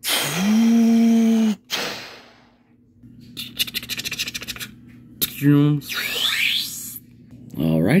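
Rapid clicking of laptop keys being typed fast, a little after the halfway point. Before it comes a loud, steady tone with a hiss, about a second and a half long, whose pitch rises at the start.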